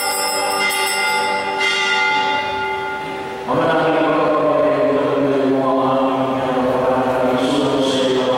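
A sustained ringing chord fading slowly, then about three and a half seconds in chanted singing of held notes begins at a Catholic Mass.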